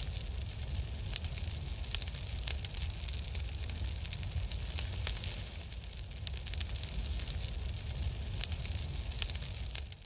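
Crackling fire sound effect: a steady hiss with scattered sharp crackles over a low rumble.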